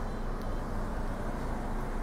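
Steady low rumble with an even hiss inside a car's cabin, with no distinct events.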